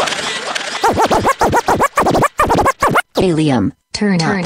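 DJ turntable scratching in a hip hop mix: the music gives way about a second in to quick back-and-forth record strokes that sweep up and down in pitch. Near the end come falling-pitch stutters with two brief cuts to silence.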